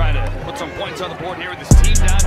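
Background music with a heavy bass beat and hi-hats. The beat drops out shortly after the start, leaving a voice over thin backing, and comes back in full near the end.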